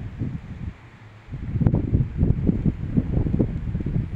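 Wind buffeting a phone's microphone: an uneven low noise that gets louder about a second and a quarter in, with irregular gusts.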